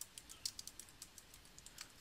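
Typing on a computer keyboard: a quick run of faint key clicks, several a second, as a search term is entered.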